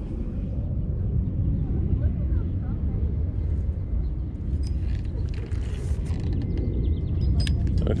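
Steady low outdoor rumble with faint voices in the background and a few light clicks in the second half.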